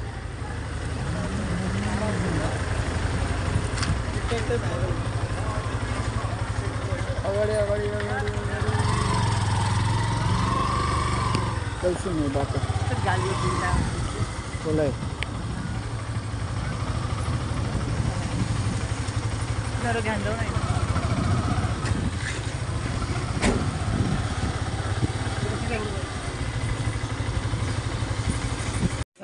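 Vehicle engines running with a steady low hum, motorcycles among them, while people talk in the background.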